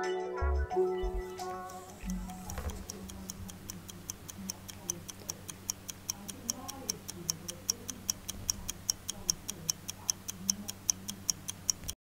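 Clock-ticking sound effect, fast and regular at about four ticks a second, growing louder until it cuts off suddenly. Lo-fi background music fades out just before the ticking starts.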